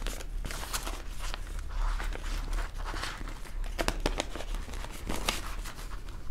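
Banknotes and a clear plastic zip-pouch cash envelope being handled, giving scattered crinkling and rustling with small clicks of the plastic as notes are pushed into the pouch.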